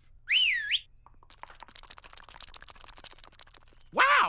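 A short, high whistle that wavers down and up in pitch, followed by about three seconds of faint, rapid, even clicking.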